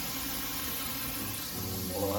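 Steady low hum and hiss from pans cooking on a gas hob, with boiling water and frying pans on the burners; the hum grows a little stronger near the end.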